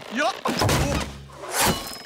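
Cartoon slapstick sound effect of a character falling to the ground: a clattering crash with heavy thuds, which follows a short laughing voice.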